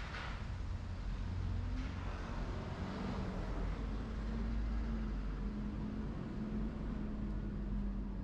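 City street traffic: a motor vehicle's engine running close by with a steady low hum over the rumble of traffic, with a short hiss at the very start.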